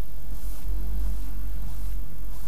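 Steady low hum, with a few faint scratchy sounds as a wide paintbrush is moved and laid down on the worktable.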